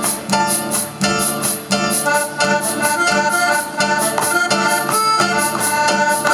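Accordion playing a melody over an acoustic guitar accompaniment, with a regular pulsing chord rhythm underneath.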